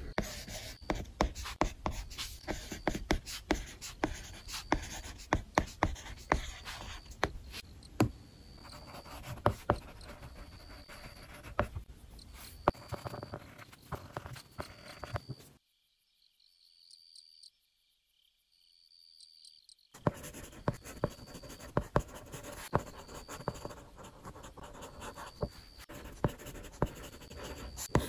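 Stylus tip writing on a tablet screen: scratchy handwriting strokes with frequent sharp taps as the tip meets the glass. It drops out to near silence for about four seconds around the middle, then resumes.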